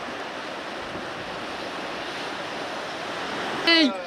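Steady rush of ocean surf breaking on a rocky shore, with a brief voice near the end.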